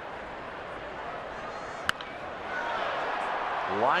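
Crack of a baseball bat meeting a pitch, one sharp report about two seconds in, heard over a steady ballpark crowd. The crowd noise swells after the hit as the line drive carries to right field.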